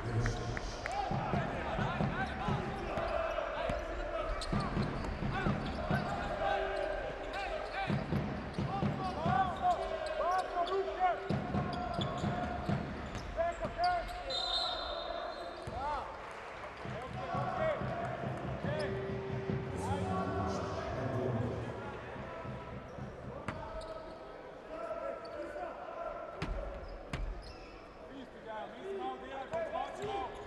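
Basketball dribbled on a hardwood court, with short sneaker squeaks from players cutting on the floor, over arena crowd noise and voices.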